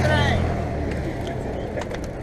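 Low engine rumble from a motor vehicle close by. It is loudest at the start and fades away over about a second. A voice talks over it at the start.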